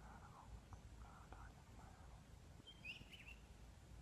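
Near silence, with faint soft voice-like sounds in the first half and a single short, high bird chirp about three seconds in.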